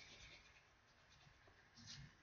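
Near silence with faint pencil lead scratching across paper while a line is drawn: a soft stroke at the start and another near the end.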